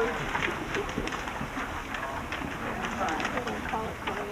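Indistinct murmur of several people talking quietly in a room, with short rustles and clicks of paper tunebook pages being handled.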